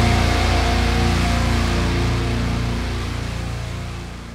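Heavy band music ending: the song's last held chord rings out and slowly fades away.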